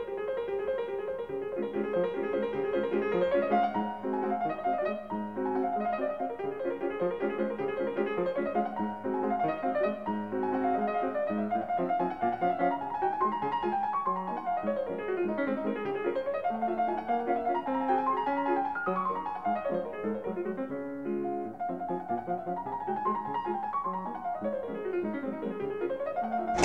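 Background piano music, quick runs of notes climbing and falling.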